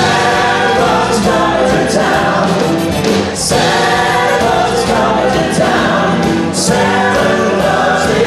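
A live band with several singers singing together into microphones: a full, choir-like group vocal over the band.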